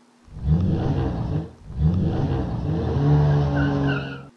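Live-stream app's 'Sports Car' gift sound effect: a sports car engine revving, rising and falling in pitch. It plays twice in a row, the second time longer.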